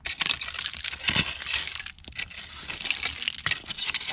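Long-handled rake scraping through dirt and a layer of broken glass bottles, the glass clinking and rattling in many small sharp clicks over the grating of the soil.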